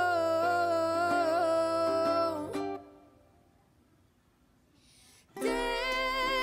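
Woman singing a long held note over acoustic guitar accompaniment, which fades out a little under halfway through. A pause of about two and a half seconds follows, nearly silent, and then the singing and guitar come back in near the end.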